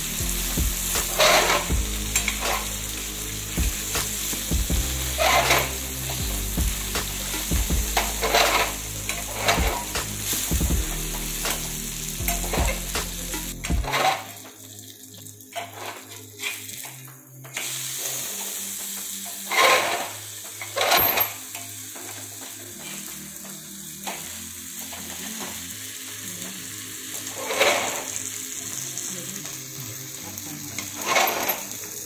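Rava-coated mackerel shallow-frying in oil on a flat tawa, sizzling steadily, with a metal spatula scraping against the pan now and then.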